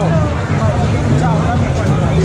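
Voices and chatter of a busy outdoor street-food market over a steady low rumble.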